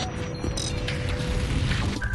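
Produced intro sound design: a dense, low, rumbling mechanical effect with scattered clicks and a held tone, layered with music. A steadier musical theme comes in at the very end.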